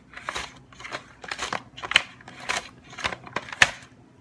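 A lemon being sliced on a plastic Tupperware mandolin: the hand guard holding the lemon is pushed back and forth over the blade in quick strokes, about two a second, each a short scraping cut.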